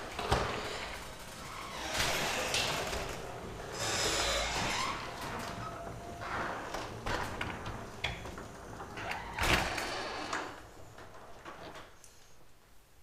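Sectional garage door being raised, rolling up its tracks with an irregular clatter and knocks, the loudest knock about nine and a half seconds in, then going quiet near the end as it reaches the top.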